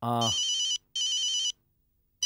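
Mobile phone ringing: two electronic rings of a little over half a second each, with a short gap between.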